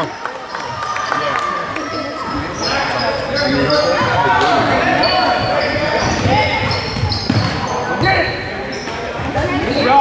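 A basketball bouncing on a hardwood gym floor during play, with scattered voices shouting and talking, all echoing in the gym.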